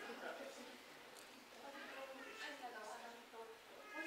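Speech: a woman talking at a fairly low level.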